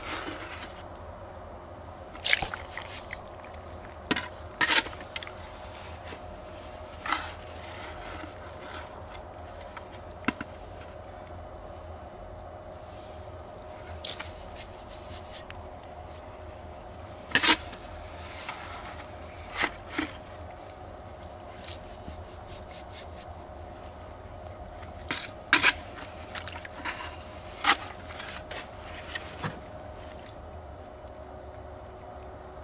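Plastic scoops scraping and knocking against a bucket of wet crushed-ore mud, in short sharp strokes every second or two, as the slurry is worked into the separator's feed. A steady low hum runs underneath.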